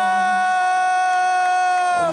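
Boxing ring announcer's voice holding one long, high, steady shouted note, drawing out the end of the winner's introduction; the pitch sags slightly as it ends.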